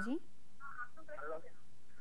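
Faint, thin voice of a caller over a telephone line: a few broken words at low level after a word ends at the start.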